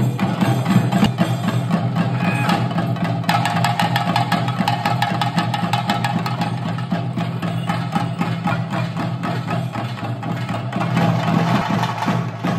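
Chenda drums beaten fast with sticks in a dense, unbroken rhythm, with a steady held tone sounding underneath; the drum ensemble accompanying a theyyam dance.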